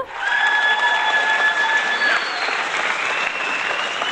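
Audience applauding in answer to a vote, with long steady whistles held over the clapping; one whistle rises slowly a little past the middle.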